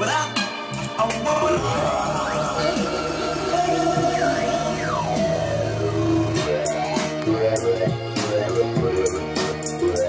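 Electronic dance remix playing back from a music production session, with a steady bass line, beat and synth notes that glide down and up in pitch.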